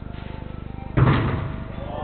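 One loud thud of a football impact about a second in, ringing on briefly in the large indoor hall.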